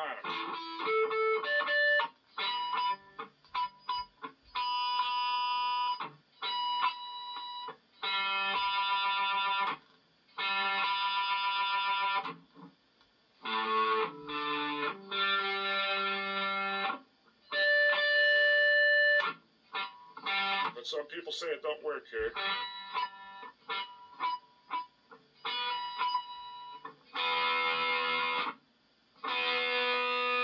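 Electric guitar playing two-string power chords one after another across the neck, each plucked and left to ring for a second or two with short gaps between, mixed with a few quick single plucks. The chords are played to check the tuning by ear, listening for the chord to waver.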